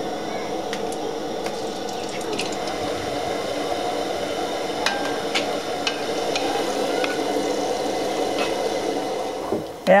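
Dough balls deep-frying in hot oil in an aluminium pot: a steady sizzle with scattered pops and clicks.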